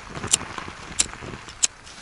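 A small lighter struck three times, a sharp click about every two-thirds of a second, failing to light, over a steady rush of wind.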